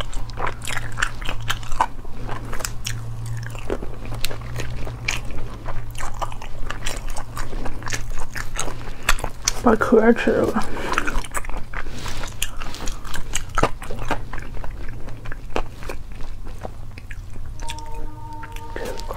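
Close-miked eating: wet biting, chewing and mouth clicks as spicy braised food in chili oil is picked apart by hand and eaten, with a brief vocal sound about ten seconds in and a low steady hum underneath.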